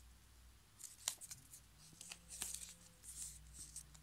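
Thin paper strip rustling and crinkling as it is handled against a journal page, with a few sharp crackles about a second in and around the middle.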